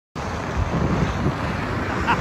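Wind buffeting the microphone: a steady rushing noise with uneven low rumbles.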